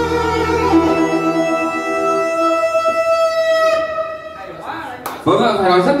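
Electronic keyboard playing the closing chord of a slow ballad: the bass drops out about a second in, and a high held note fades away about four seconds in. A man's voice begins near the end.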